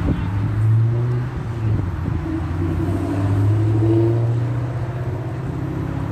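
A motor vehicle's engine running close by: a steady low hum that swells and eases over a few seconds.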